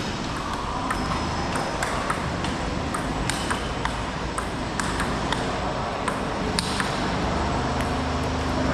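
Celluloid-style plastic table tennis ball clicking off rubber paddles and the table top in a doubles rally, a sharp tick about twice a second in an uneven rhythm, over the background noise of the hall.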